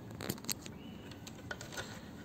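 Hands handling a tripod-mounted condenser microphone and its cable: a few soft clicks and rustles, the sharpest about half a second in and another about a second and a half in.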